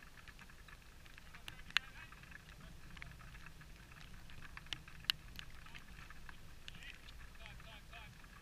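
Distant shouts and calls of footballers during play, with a few sharp ball kicks, the loudest about two seconds in and another about five seconds in, over a low steady rumble.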